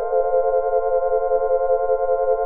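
Background music: a synthesizer chord held steadily.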